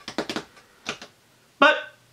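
A man's mouth noises between sentences: a few quick tongue clicks and lip smacks, another click just before a second in, then a short voiced hum.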